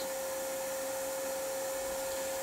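Vacuum cleaner running steadily with a constant whine, its nozzle sealed inside plastic film wrapped around a foam block, drawing out the air so the foam compresses.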